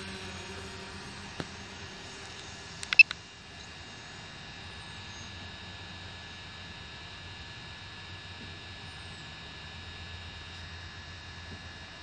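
Steady low hum with a few sharp clicks about three seconds in.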